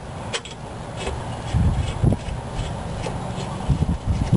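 Light metallic clicks and scraping as a rear disc-brake caliper bolt is fitted and started by hand, with a few dull thumps around the middle and near the end.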